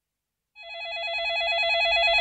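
Telephone ringing with a rapid electronic warbling trill. It starts about half a second in and grows louder.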